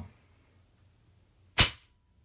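A single shot from an EdGun Leshiy 2 PCP air rifle: one sharp crack about one and a half seconds in, dying away quickly. The rifle has been re-tuned with new power jets and regulator pressure, and the shot measures about 11.8 ft-lb, just under 12 ft-lb.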